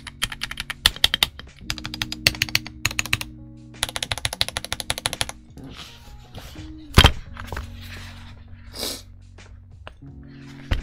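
Typing on a ProtoArc x RoyalAxe L75 gasket-mounted mechanical keyboard with Gateron G-Pro Yellow linear switches: fast runs of keystrokes for about five seconds, then the typing stops. About two seconds later comes a single loud thump.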